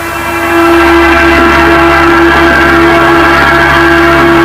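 Aircraft engine and propeller of a Citabria 7KCAB, a four-cylinder Lycoming, droning steadily at a fixed pitch as heard inside the cabin. It grows louder about half a second in and then holds, as the plane comes out of a downline during aerobatics.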